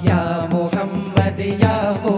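A group of voices singing a Malayalam Islamic devotional song in praise of the Prophet, over a steady percussion beat of about two strikes a second.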